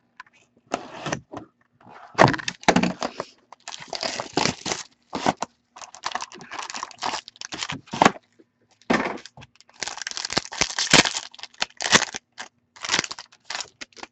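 A sealed hockey card box being torn open and its cards unwrapped: irregular tearing, crinkling and crackling of plastic wrap and cardboard, in short uneven bursts.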